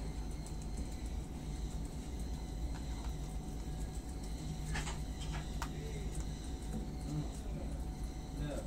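Guinea pigs and a rabbit chewing leafy greens: scattered faint crunches and clicks, with a short cluster of several just past the middle, over a steady low hum.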